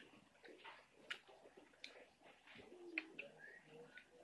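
Near silence: faint soft clicks of chewing and of fingers handling mango slices in a metal bowl. A faint short bird call comes about three seconds in.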